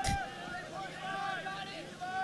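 Faint voices of players and spectators calling out across the field, with background chatter under a low steady hum.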